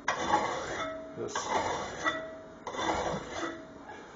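Coarse hand file rasping across an aluminum part clamped in a bench vise: three forward strokes a little over a second apart, with a short ringing tone after some of them.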